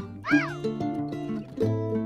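Light plucked-string background music with a single cat meow, rising then falling in pitch, about a third of a second in; the meow is the loudest sound.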